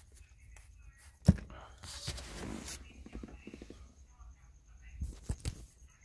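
Faint handling noises: a sharp click about a second in, a breathy rustle a little later, and a few small clicks near the end, over a faint high steady whine.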